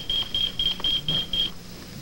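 Electronic pager beeping: a rapid train of short, high, single-pitch beeps, about four a second, that stops about a second and a half in. The page signals a message that has just been left for its owner.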